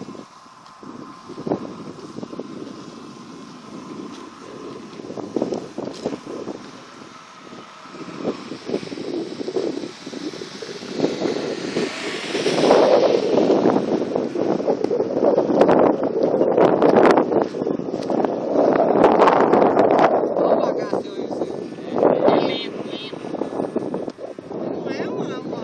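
Wind buffeting a phone microphone in irregular gusts, building about a third of the way in and staying strong through most of the rest. Before the gusts take over, a faint steady whine from a distant electric RC model plane's motor and propeller fades out.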